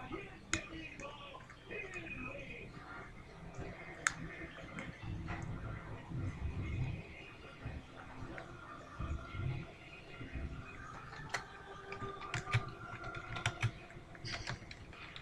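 Typing on a computer keyboard: scattered, irregular key clicks, with a few sharper clicks in the second half.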